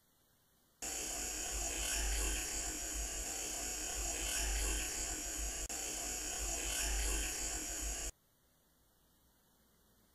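A stretch of heavily boosted audio-recorder hiss with a low rumble beneath it, cutting in about a second in and stopping abruptly near the end. The recordist offers it as a faint whisper of the name "Edmund".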